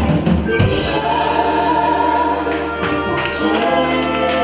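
Live band music: a lead singer with backing singers holding long notes together, gospel-like, over bass, drums, violin and trumpet.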